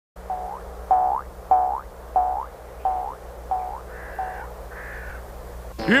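Cartoon sound effect: a series of seven short tones about two-thirds of a second apart, each bending upward at its end, followed by two fainter, higher notes. A steady low hum runs underneath.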